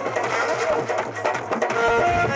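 Live Indian devotional bhajan band playing an instrumental passage: a melody of held notes on keyboard over drums.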